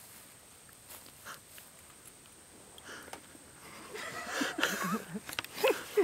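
A quiet first few seconds with a few faint clicks, then, about halfway through, men laughing in uneven wavering bursts that get louder toward the end.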